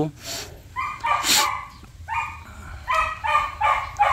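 A small white long-haired dog whining in about five short, high-pitched whimpers while its fur is handled, with a few brief breathy noises between them.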